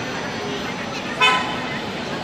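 A single short, high-pitched horn toot about a second in, the loudest sound here, over steady background chatter in a busy railway station concourse.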